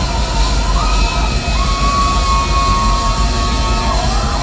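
Live heavy-metal band playing through a club PA, loud and distorted: a steady low rumble under one long held high note that steps up about a second in and is sustained, with crowd noise mixed in.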